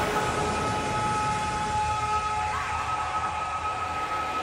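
Breakdown in a hard techno track with the kick drum dropped out: a sustained rushing, noisy synth wash with two steady high notes held over it.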